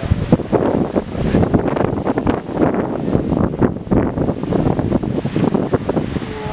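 Wind buffeting the camera's microphone: a loud, uneven gusting noise that rises and falls rapidly throughout.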